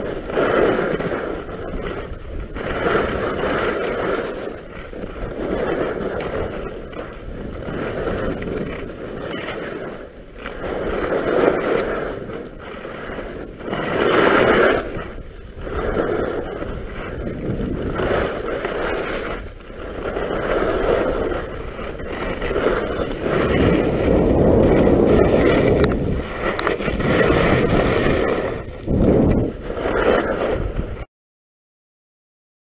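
Skis scraping over packed snow on a descent: a hissing scrape that swells and fades with each turn, every second or few, over wind rumbling on the microphone.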